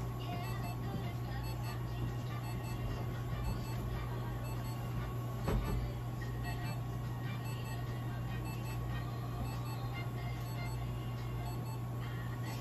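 A steady low hum with a faint thin tone above it, and faint background music. There is a single knock about five and a half seconds in.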